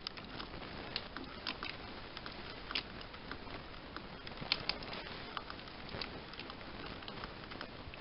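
Faint scattered clicks and taps from fingers handling a plastic Terminator endoskeleton statue and pressing at its head, over a steady low hiss. The statue's own electronics make no sound: its batteries are dead.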